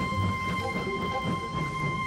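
Soundtrack of an animated railway scene: a single high note held steadily over a low, uneven rumble.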